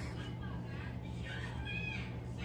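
Two short high-pitched vocal calls, one about half a second in and a louder one near the end, over a steady low hum.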